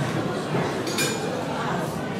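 A single light clink of a hard object about a second in, with a short high ringing after it, over a low murmur of voices in the hall.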